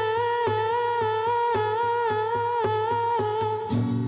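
A woman's voice holding one long sung note with a slight waver over a nylon-string classical guitar plucked about twice a second. The note ends just before the end, where the guitar moves on to a new chord.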